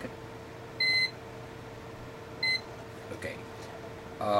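Two short electronic beeps, about a second and a half apart, over a steady faint hum.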